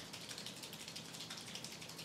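Faint room tone: a low, steady hiss with no distinct sound in it.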